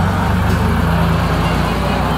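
Air-cooled 2.2-litre flat-six of a 1970 Porsche 911T running steadily as the car drives past.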